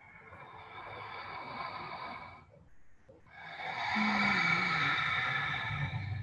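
A woman's long, audible inhale, then, after a short pause, a deep sighing exhale that is partly voiced and falls in pitch: deliberate yoga breathing.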